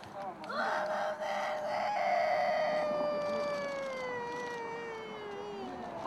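A woman wailing in grief: one long, high cry that starts about half a second in, holds its pitch, then slowly falls and fades away near the end.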